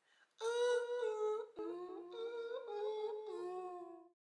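A man's wordless singing in a high voice: long held notes stepping up and down, with a brief break about a second and a half in.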